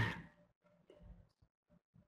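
A man's brief laugh trailing off in the first moment, then near silence.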